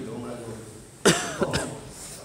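A person coughs twice in quick succession about a second in, loud and close, louder than the speech around it.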